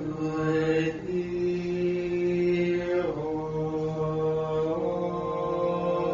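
Slow liturgical chant by voices singing together: long held notes that step to a new pitch about a second in, again near three seconds and again just before five.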